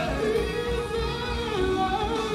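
Live R&B band, with electronic keyboards and bass guitar over a steady beat, playing under a male singer who holds one long, slightly wavering note, dipping lower about one and a half seconds in.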